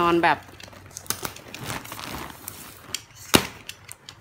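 Clear plastic film around a mattress topper crinkling as the wrapped topper is lifted and handled. The crinkling has scattered small clicks and one sharp snap near the end.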